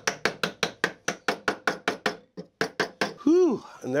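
Quick, light mallet taps, about six a second, driving the tails of a walnut dovetail joint down onto the pins for a test fit. The taps stop a little after two seconds, with a few more just after. A short vocal sound from a man follows.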